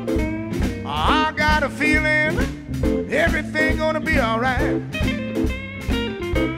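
Live electric blues band playing an instrumental stretch: drums keep a steady beat of about four hits a second under the bass, while a lead instrument bends and wavers its notes.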